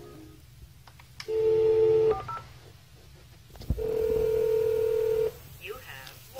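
Hotel room desk telephone in use. A click is followed by about a second of dial tone, then a few short keypad beeps, then a second click and a longer steady tone of about a second and a half.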